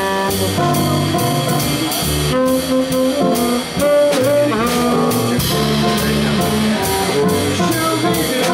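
Small jazz combo playing: a saxophone carries a wavering, sliding melody over walking upright bass and drum kit with steady cymbal strokes.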